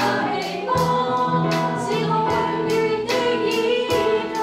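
Worship song: singing over instrumental accompaniment with a steady beat.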